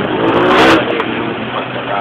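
Engine and road noise heard from inside a vehicle in traffic, with an engine revving briefly in the first second, the loudest moment.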